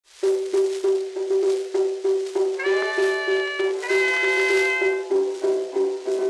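A 1920 acoustically recorded dance band playing a fox trot, played back from a 78 rpm shellac record. A short note repeats about three times a second, and sustained chords break in twice in the middle.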